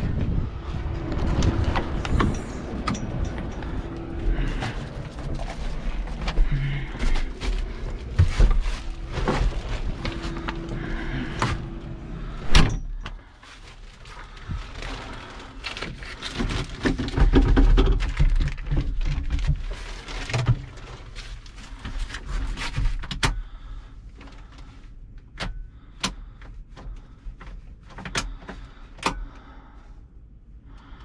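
Handling noises and knocks with a low rumble of wind and surroundings, then a loud bang about twelve seconds in as a tractor cab door shuts, after which it is much quieter. Inside the closed cab come scattered clicks and rustles of hands working around the plastic-wrapped controls.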